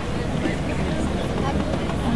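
A steady low background rumble with faint, indistinct girls' voices talking quietly.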